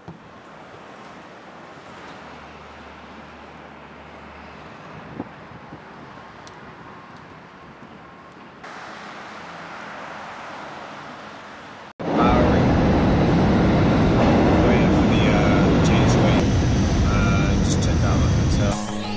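Steady city background noise, distant traffic hum, for the first twelve seconds. After an abrupt cut it switches to a much louder, dense rumble, a subway train running through a station.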